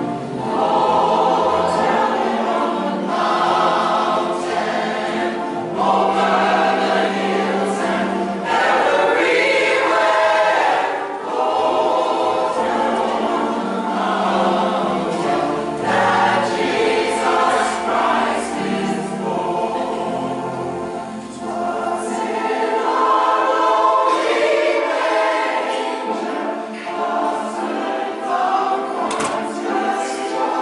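A gospel church choir of mixed men's and women's voices singing together, led by a director.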